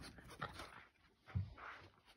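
A dog's faint breathing and short huffs as it plays in the snow, with a soft low thump about a second and a half in.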